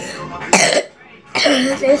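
A young boy clears his throat with one short, harsh, cough-like burst about half a second in, then starts to speak. The sound comes from phlegm caught in his throat during a chest cold.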